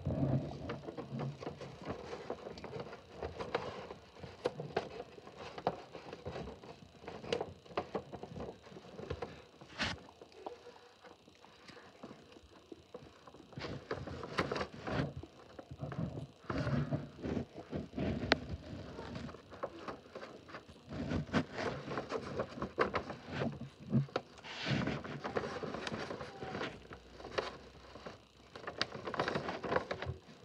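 A sheet of A3 paper being handled, folded and creased by hand: irregular rustling and crinkling with frequent sharp crackles.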